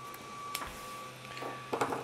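Support material being pried off a 3D-printed plastic figure: one sharp snap about half a second in and a soft scrape, over a steady hum.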